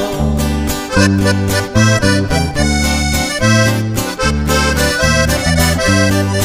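A norteño band plays an instrumental break between verses of a corrido. A button accordion leads the melody over a strummed guitar, with low bass notes changing about twice a second in a steady dance rhythm.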